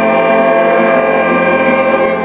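A school big band's saxophones and trumpets holding one loud chord together, unchanging throughout.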